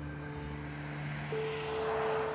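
A car passing on the street, its tyre and engine noise swelling toward the end, over sustained background music with held notes and a low drone.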